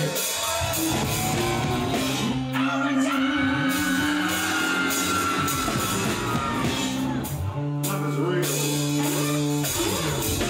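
Rock band playing: electric guitar, drum kit and a singing voice over held low bass notes.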